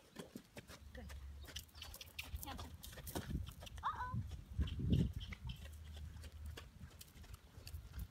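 Horse cantering on a longe line, hooves thudding irregularly on arena sand, with one louder thump about five seconds in.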